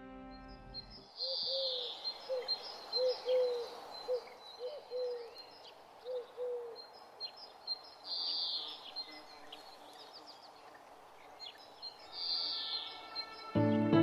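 Several wild birds singing: high chirping and twittering in repeated bursts, with a run of about a dozen short, low hooting notes over the first half. Background music cuts out about a second in and music returns near the end.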